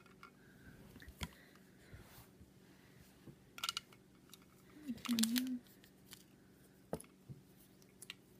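Faint, scattered plastic clicks and taps, about four of them, as a small plastic scoop knocks against the plastic drums of toy washing-machine candy kits while water is scooped in. A brief murmured voice comes about halfway through.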